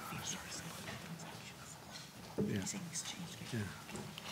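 Quiet, murmured speech away from the microphones, with a few small clicks.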